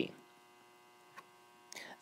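Faint, steady electrical mains hum in the recording during a pause in speech, with a short soft breath-like noise near the end.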